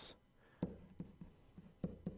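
Stylus writing on a pen tablet or touch screen: a few faint, short taps and scratches as handwriting is traced out.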